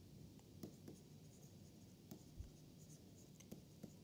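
Faint taps and scratches of a stylus writing on a tablet screen, a few light clicks over near-silent room tone.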